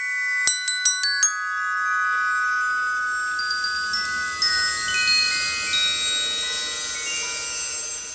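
Glockenspiel struck with mallets: a quick run of bright metallic notes in the first second or so, then the notes ring on and overlap for several seconds. Further high tones come in one after another, mostly stepping lower.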